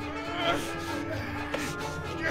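Background film music holding a long note over a low drone, with short strained grunts from two people grappling, the loudest about half a second in.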